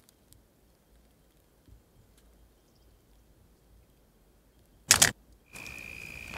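Near silence, then about five seconds in a sharp double bang, the loudest sound here: a car door being slammed shut. Near the end a steady high-pitched call and quiet outdoor ambience begin.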